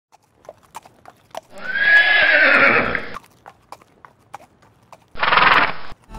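A horse whinnying: one long call of nearly two seconds that falls in pitch, over scattered hoof clops, then a shorter second burst near the end.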